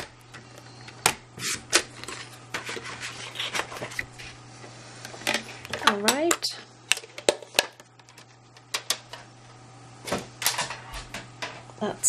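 Sliding-blade paper trimmer cutting a strip of card-stock paper: the blade carriage clicking and sliding along its rail, with irregular sharp clicks and taps as the paper is positioned and lifted away.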